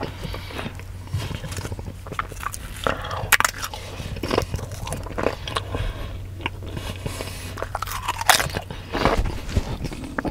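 Doritos tortilla chips crunching as they are bitten and chewed, a run of irregular crisp crunches, the loudest about three and eight seconds in.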